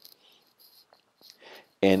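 Near silence with faint hiss and specks of noise, then a man's voice resumes near the end.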